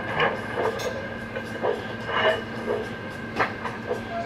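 Sound decoder in an LGB U52 G-scale model steam locomotive playing steam-exhaust chuffs through its small loudspeaker as the model runs, about two chuffs a second, over a steady hum.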